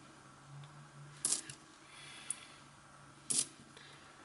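UK 20p coins clicking against each other as they are handled in the fingers: two light clicks, about a second in and again a little after three seconds, with a small tick between, over a faint steady hum.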